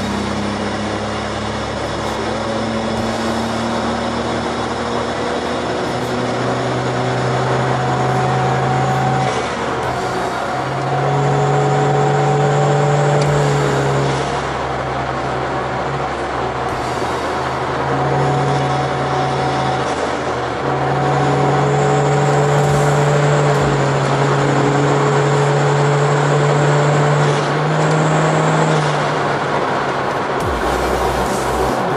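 Turbocharged Toyota Avanza's 2NR-VE four-cylinder engine droning under load, with tyre and wind noise, heard inside the cabin as the car accelerates from about 100 to 160 km/h. The engine note rises slowly over the first few seconds, then holds steady with brief dips.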